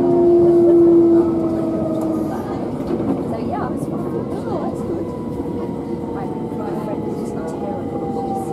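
Interior of a Southern Class 377 Electrostar electric multiple unit on the move: the traction motors whine in several steady tones that ease slowly down in pitch over the rumble of wheels on rail. The strongest, lowest tone fades out after about two seconds.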